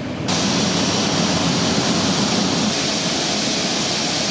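Steady rushing noise of jet aircraft engines on an airport apron, stepping up louder and brighter about a third of a second in.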